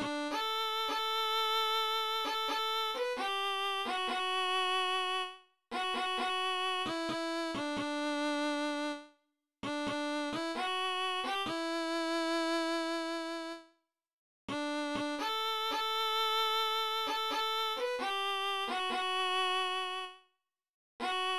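Computer playback of a solo violin melody from notation software, played at a slow tempo. The notes hold a perfectly steady pitch in four phrases, each ending on a long held note and cutting off into complete silence.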